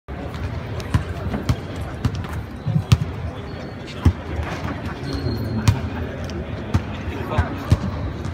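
Basketballs bouncing on a hardwood gym court: irregular sharp thuds, several a second, over background chatter.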